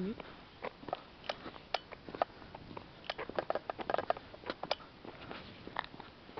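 Irregular light clicks and taps from footsteps and the handling of a hand-held camera while walking, thickest in the middle of the stretch.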